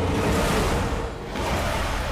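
Dramatic television background score: a dense, sustained swell with a brief dip about a second in, then a rising noisy sweep.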